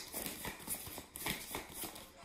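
Tarot cards being handled: a run of faint, irregular clicks and taps.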